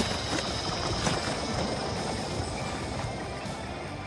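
Anime sound track: a steady, rumbling wash of noise that slowly fades, with faint music under it.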